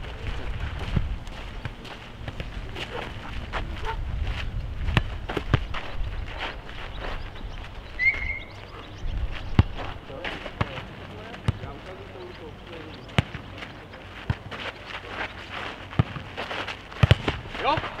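Futnet rally: a ball kicked back and forth over the net and bouncing on the court, giving sharp, irregular knocks throughout, with players' voices calling in between.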